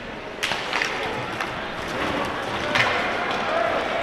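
Ice hockey rink ambience during a face-off: skates scraping on the ice, with a few sharp clacks of sticks on the puck, the first about half a second in.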